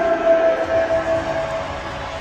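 Arena PA announcer's amplified voice holding one long, steady note, a drawn-out call, for about a second and a half over crowd noise in the arena.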